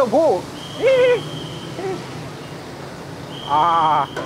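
Short, hoot-like shouted calls from people's voices, rising and falling in pitch: one at the start, one about a second in, and one near the end. A thin steady high whine sounds under the calls twice.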